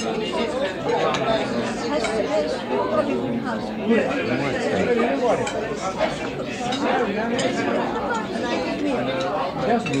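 Busy restaurant ambience: many diners talking at once in English, a dense steady babble of overlapping conversation in a large room. Short clinks of dishes, cutlery or glass come through now and then, the sharpest just before four seconds in.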